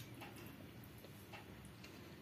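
Faint, scattered small clicks and soft wet sounds of fingers eating water-soaked rice by hand, working the rice and dipping into a small steel bowl.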